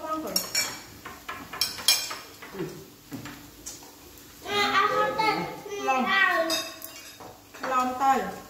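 Chopsticks and utensils clinking against a metal hot-pot pan and dishes at the table, a few sharp clicks in the first two seconds. Voices talk over it in the second half.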